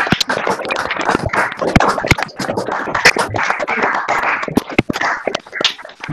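Applause from many participants on an online video call, heard through their unmuted microphones as a dense, uneven clatter of claps that thins out near the end.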